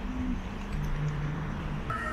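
Outdoor street ambience: a steady low rumble of traffic with a low droning tone through the middle. Background music comes in right at the end.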